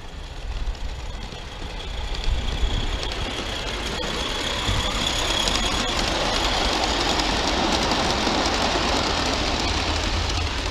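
A small live-steam garden-railway locomotive running along the track with its coaches, its sound growing louder over the first few seconds as it nears and then holding steady.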